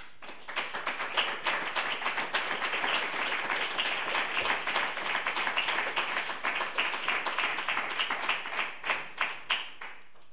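Audience applauding: the clapping builds up within the first second, holds steady, then thins out into a few last separate claps near the end.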